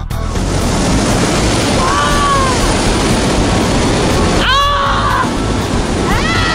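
Loud, steady drone of a skydiving plane's engine and propeller, heard from inside the cabin. Two brief cries rise and fall in pitch over it, about two seconds in and again near four and a half seconds.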